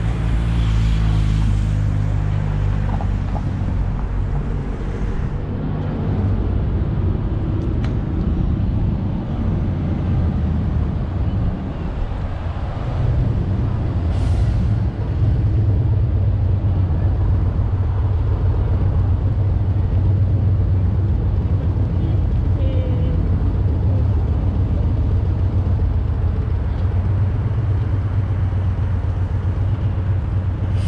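Road traffic on a busy city street: vehicle engines running, with a steady low engine hum that grows stronger about halfway through. There is a brief hiss about fourteen seconds in.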